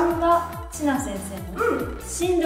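Upbeat background music: a steady beat of about four thumps a second under a bouncy, voice-like lead melody.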